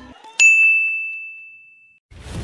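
A single bright ding: a bell-like chime struck once about half a second in, ringing on one clear high note as it fades away over the next second and a half.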